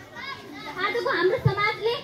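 A girl's voice speaking, over the chatter of a large crowd of children.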